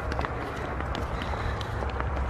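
Footsteps on a paved path, a few faint irregular taps, over a steady low rumble.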